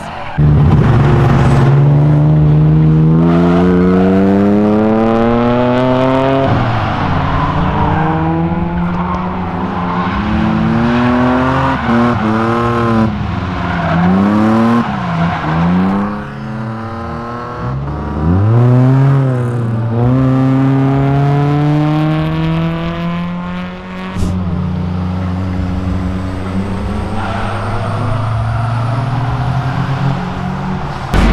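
A car engine revving hard during drifting. Its pitch climbs steadily for about five seconds, then drops and swings up and down several times as the throttle is lifted and floored again, over a haze of tyre noise.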